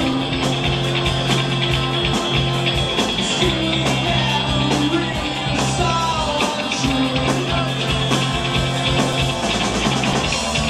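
A live rock band playing loudly: electric guitar, bass guitar and a drum kit with cymbals, over long held low notes.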